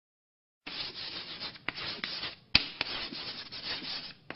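A dry scratching, rubbing noise in uneven strokes that starts a little over half a second in, with a few sharp clicks, the loudest about two and a half seconds in.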